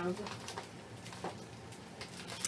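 A woman's drawn-out hum as her voice trails off, then faint handling noise with a couple of soft taps or rustles from packaged scrapbooking supplies being picked up.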